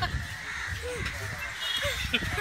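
Crows cawing in short arched calls, one about a second in and another near the end, over low street noise.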